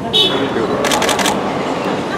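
A rapid burst of camera shutter clicks, about five in under half a second, about a second in. A brief high squeak comes just before it.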